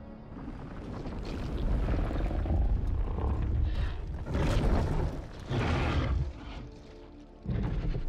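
Monster-movie battle sound mix: dramatic film score under a heavy low rumble, with loud booming bursts about four and a half and six seconds in and another near the end.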